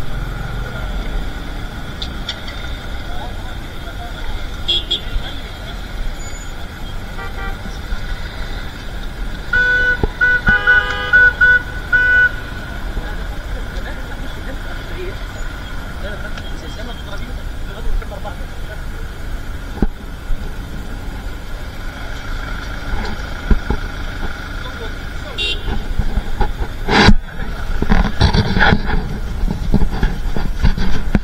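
Steady city street traffic, with a car horn sounding in a quick series of short honks about ten seconds in, lasting roughly three seconds. Loud bursts of noise follow near the end.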